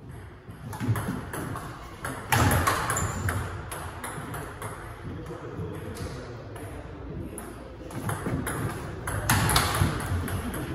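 Table tennis ball being hit back and forth in a rally: a run of short, sharp clicks as it strikes the rubber bats and bounces on the table, with two louder, busier stretches, one about two and a half seconds in and one near the end.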